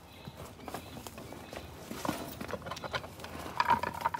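Irregular knocks, taps and scuffs of a large mulga snake (king brown) being handled on a pinning pad: the clear pinning rod is pushed about and knocks as the strong snake struggles against the restraint.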